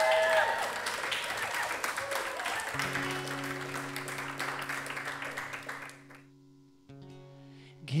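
Studio audience applause that fades out over about six seconds, while an acoustic guitar starts the song about three seconds in with a low ringing note. A quieter new chord sounds near the end.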